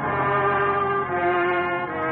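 Orchestral music with brass, held chords swelling up and moving to new notes about a second in.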